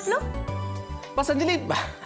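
Sitcom background music with a steady low bass line. A short wavering vocal sound comes in about a second in.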